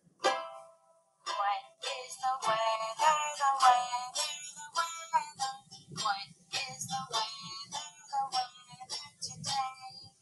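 A recorded children's weather song playing: singing over a light plucked-string accompaniment. A single note sounds just after the start, and the song proper begins about a second in.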